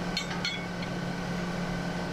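A steady low hum with a few faint, light metallic clicks in the first half-second, from a cutting knife being handled in the baler's knife drawer.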